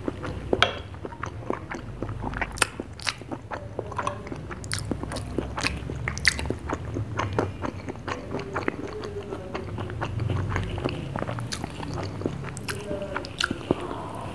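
Close-miked eating of ice cream falooda from a spoon: many quick, wet mouth clicks and chewing sounds, with the metal spoon working in a glass.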